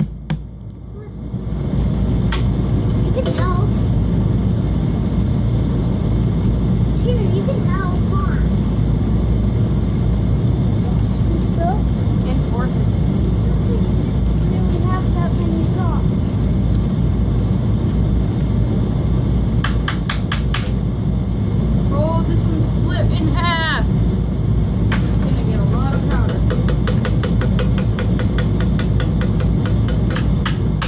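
A loud, steady low rumble that starts suddenly about a second and a half in, with children's high voices calling out now and then over it.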